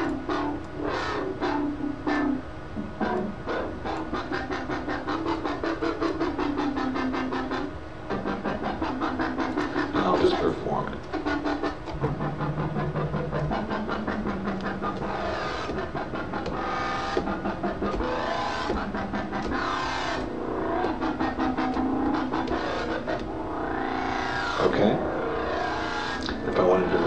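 Wobble bass from the Massive software synthesizer played from MIDI pads, its filter pulsing in a fast, even rhythm over held bass notes that step to new pitches several times. Filter sweeps rise and fall in the second half.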